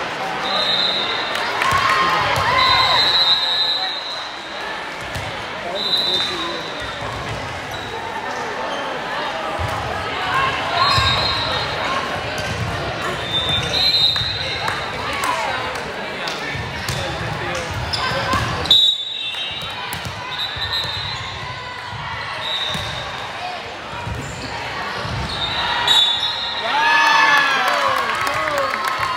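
Echoing sports-hall ambience during a volleyball match: voices of players and spectators talking and calling, with scattered thuds of the ball being hit and bounced on the court.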